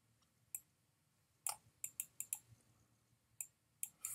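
Faint, scattered sharp clicks and taps, about nine, several bunched together in the middle, from writing on screen with a digital pen.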